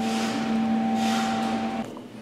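Steady machine hum with two fixed tones over a hiss, which cuts off suddenly near the end.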